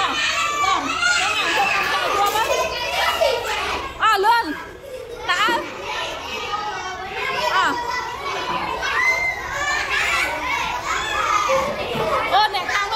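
A roomful of young children chattering and calling out all at once, with one loud, high, swooping call about four seconds in.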